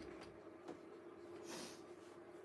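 Near silence: a faint steady hum, with a soft breath through the nose about one and a half seconds in.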